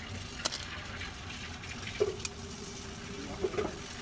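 A spanner working on bolts under the car, with a sharp metallic click about half a second in and another about two and a quarter seconds in, over a steady faint hum.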